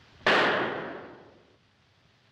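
A single handgun shot: one sharp crack about a quarter second in, with a ringing tail that dies away over about a second.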